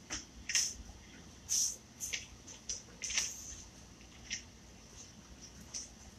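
Pages of a book being leafed through close to a microphone: several short, soft paper rustles with quiet pauses between them.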